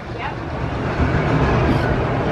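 A steady low rumble of background noise with no clear events or tones in it.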